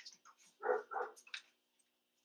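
A large poodle gives two short vocal sounds in quick succession about two-thirds of a second in, followed by a light click.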